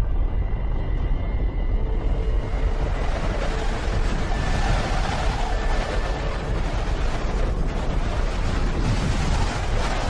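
Deep, continuous rumbling sound effect of a planetary collision under a faint music bed. The noise thickens and spreads higher about two seconds in and stays dense throughout.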